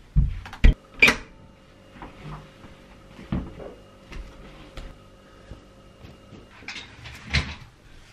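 Bathroom door opening: its latch and lever handle clicking sharply and the door knocking in the first second or so, then scattered softer knocks and handling sounds, with a faint steady hum through the middle.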